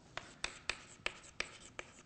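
Chalk writing on a blackboard: a quick run of short, sharp chalk taps and scrapes as a word is written.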